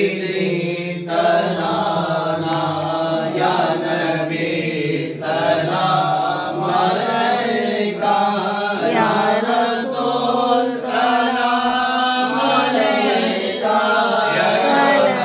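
A group of men chanting a devotional recitation together in one continuous, melodic chant.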